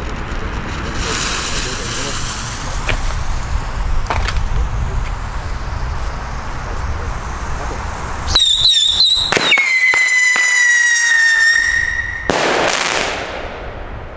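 Salute firework rocket in flight: a loud, wavering high whistle that settles into one steady, slowly sinking tone. About twelve seconds in it ends with a sudden bang that fades away. Before it, a few seconds of low hiss with faint clicks while the fuse is lit.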